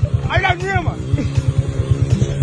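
Small motorcycle engine running with a rapid, even putter, about a dozen beats a second.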